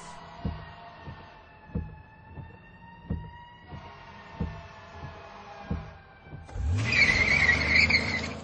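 Electronic outro sound design: deep single thumps a little over a second apart, like a slow heartbeat, under sustained high synth tones that drift slightly downward. About six and a half seconds in, a loud rushing swell with a rising low rumble takes over.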